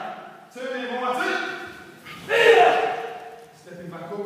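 A voice shouting two drawn-out calls in a large, echoing hall: one about half a second in, and a louder one just after two seconds.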